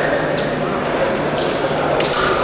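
Fencers' footwork thumping on the piste, over the steady murmur of voices in a large sports hall; a sharp click with a brief ring about a second and a half in.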